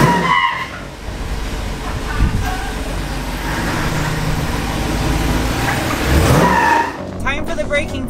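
Car driving sound: a steady low rumble with short tire squeals about half a second in and again near the end.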